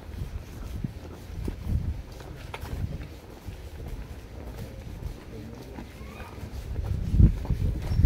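Footsteps of several people walking on a concrete walkway, heard as uneven low thumps, the loudest near the end, with a faint voice in the background.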